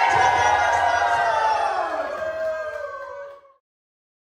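A group of party guests cheering and whooping together, fading out about three and a half seconds in.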